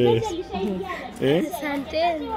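Speech only: children's voices talking, with no other sound standing out.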